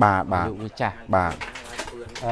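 A man speaking in conversation; only speech is heard.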